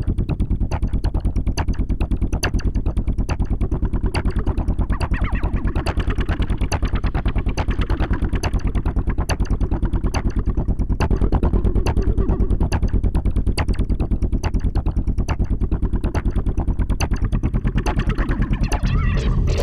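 Synthesizers playing a low, pulsing bass sequence several pulses a second, with fast ticks on top. The sound brightens about four seconds in and again around eleven seconds, as knobs on a synth are turned.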